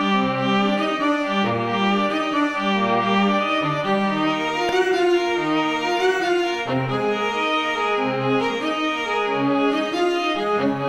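Sampled violin and cello from the free Project Alpine libraries playing together. The cello moves in separate low notes beneath the violin line. Both are mixed with reverb and a widened stereo image, without EQ.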